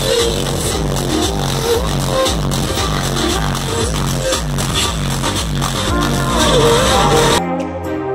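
Electronic dance music played loud through a car audio system, dominated by a deep repeating bass line from a single Massive Audio subwoofer in a ported box. About a second before the end it cuts abruptly to a different, cleaner piece of music.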